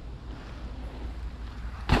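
Low steady rumble of wind on the microphone with a faint outdoor hiss, cut off near the end by a sudden loud laugh.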